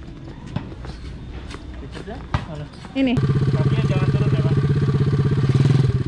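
Scattered light clicks and knocks. Then, about three seconds in, a small quad-bike (ATV) engine comes in abruptly and runs loudly and steadily with a fast, even throb.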